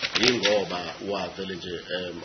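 Speech through a courtroom microphone, with a brief run of sharp clicks just at the start.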